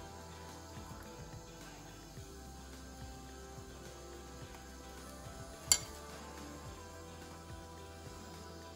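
Quiet background music over faint scraping of a butter knife spreading butter on a slice of bread. About six seconds in comes one sharp clink of the metal knife being set down.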